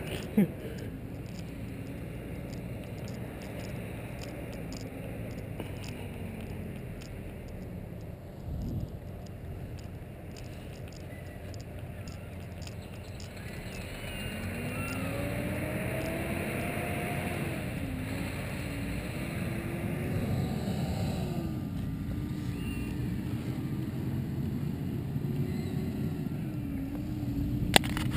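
HPI Baja 1/5-scale RC buggy's small two-stroke petrol engine, faint at first and louder from about halfway as the buggy comes closer, its pitch rising and falling as the throttle is worked. A brief thump sounds about a third of the way in.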